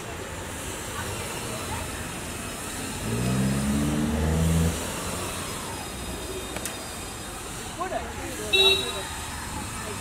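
Street traffic: a motor vehicle's engine comes up louder for about two seconds around three seconds in, and a short horn toot sounds near the end.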